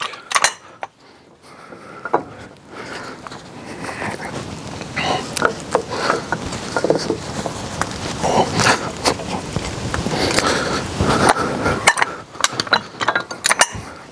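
Irregular metal clinking and knocking from a Hi-Lift jack and its Lift-Mate wheel-hook attachment as the hooks are worked onto the wheel spokes. The clinks get busier and louder after the first few seconds.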